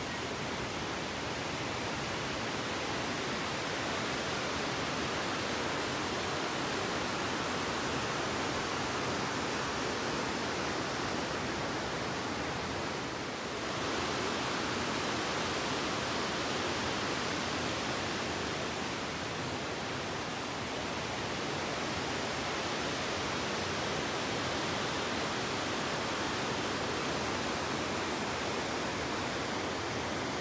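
Steady rushing of falling water from the waterfall and river in the gorge, an even hiss with no breaks and a slight dip about halfway through.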